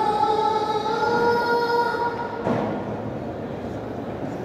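A muezzin's voice over the mosque loudspeakers holding a long, slightly wavering note of the Maghrib adhan, which ends about halfway through and rings on in the hall's echo. Then a softer murmur of the congregation.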